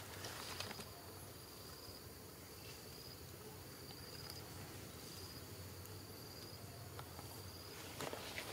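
Insect calling faintly: a high-pitched buzz repeated in short bursts about a second apart, over low outdoor background noise, with a few light clicks near the start.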